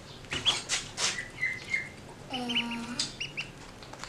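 Ducklings peeping in short high notes while pecking grain from a hand, with a quick run of sharp taps from their bills in the first second.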